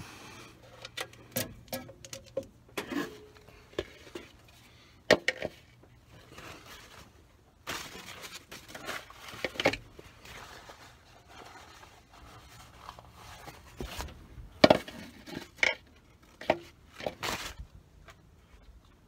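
Irregular clinks, clacks and knocks of hands handling parts in a truck's engine bay as a rag and a plastic funnel are set into the engine's oil filler opening. The loudest knocks come about five seconds in and again about fifteen seconds in.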